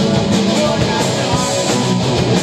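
Post-hardcore band playing live: distorted electric guitars, bass and drums at full volume, a loud and dense wall of sound without a break.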